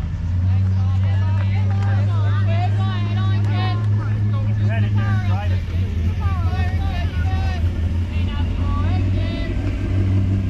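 High-pitched voices talking and calling out over the steady low hum of an engine running.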